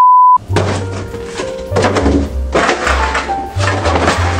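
A loud, steady high test-tone beep lasting under half a second, then background music with a steady bass beat and a few knocks of a cardboard beer case being lifted off a counter.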